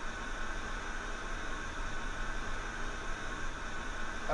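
Television static from a CRT TV showing snow: a steady, even hiss with no signal on the screen.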